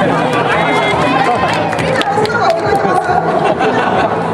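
A woman talking into a handheld microphone, with crowd chatter behind.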